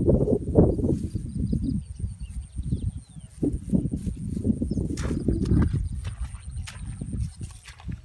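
Low, irregular rustling and thudding as hands work through grass and wet mud, with a few sharp clicks about five seconds in.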